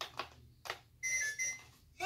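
Minnie Mouse toy cash register being paid by card: a few sharp plastic clicks, then about a second in a short electronic beep of two quick tones as the card payment goes through.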